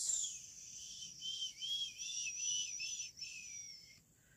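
Someone whistling a high, wavering tune of several notes run together, with a few short breaks.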